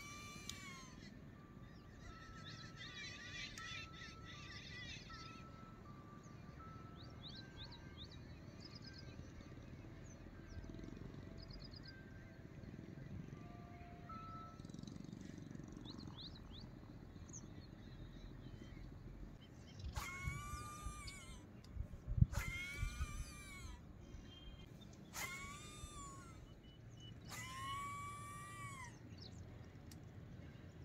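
Four loud wailing animal calls, each rising and then falling in pitch and lasting about a second, come in the last third, with a low thump between the first two. Before them there are only faint bird chirps and short, steady high notes.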